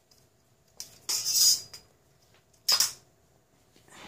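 A steel ruler being slid and repositioned on paper over a cutting mat: a small click, then a half-second scrape, and a second shorter scrape about a second and a half later.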